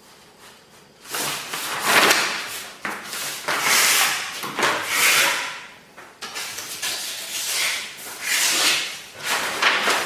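Sheets of heavy Kraft paper rustling and swishing as they are slid across a tabletop and smoothed flat by hand. The sound starts about a second in and comes as a run of swishes, each lasting up to a second.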